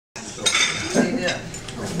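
Dishes and cutlery clinking on a restaurant table, several sharp clinks among people talking.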